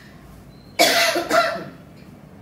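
A woman coughing twice, the two sharp coughs about half a second apart starting just under a second in.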